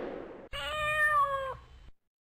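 The tail of a whoosh fades out, then a cat gives one clear meow about a second long, starting about half a second in.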